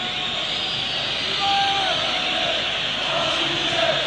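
Football stadium crowd in a TV match broadcast: a steady din of many voices with chanting, and a brief held note about a second and a half in.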